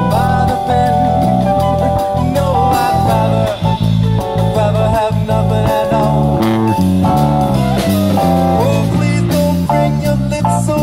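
A live band playing a song: a man sings lead over an electric bass guitar line, with a drum kit and cymbals behind.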